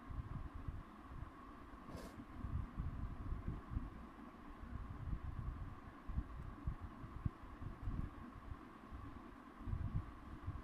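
Faint steady hum with low, uneven rumbling from a handheld camera being moved, and one short click about two seconds in.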